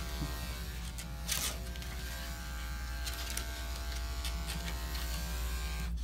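Andis five-speed electric dog clipper running with a steady buzz, with a brief louder rasp about a second and a half in.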